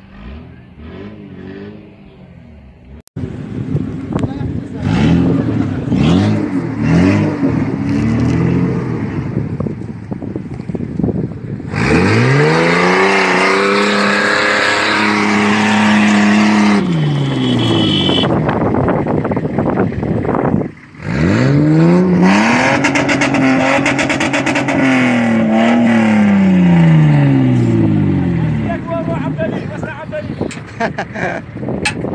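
Toyota Land Cruiser engine revved hard on a loose dirt slope while its tyres spin and throw dirt. After a few shorter blips come two long pulls, each rising, held high for a few seconds and then falling.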